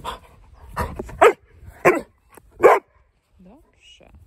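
A yellow Labrador-type dog barking on command: three short, loud barks a little under a second apart around the middle, then a faint low rising whine.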